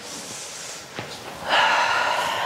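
A woman breathing hard in time with an abdominal-curl exercise: a softer breath, then a much louder exhale in the last half second as she curls up on the effort. There is a faint click about halfway through.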